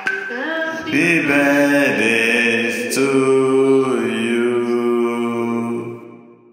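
Slow chant-like singing with long held notes and sliding changes of pitch between them.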